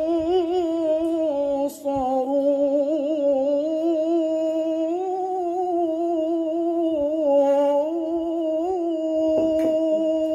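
A man reciting the Qur'an in melodic mujawwad tilawah style into a microphone: one long ornamented phrase with constantly wavering pitch, a brief break about two seconds in, and a long held note near the end.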